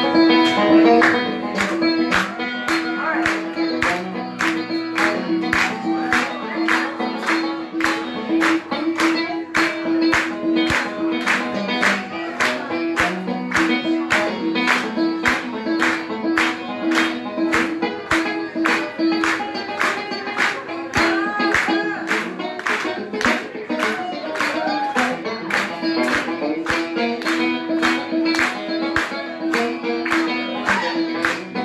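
Live band playing an instrumental passage: banjo and acoustic and electric guitars over drums, with sharp hand claps on the beat about twice a second and a steady held note underneath.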